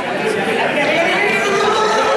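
A group of young people's voices chattering and talking over one another, echoing in a large sports hall.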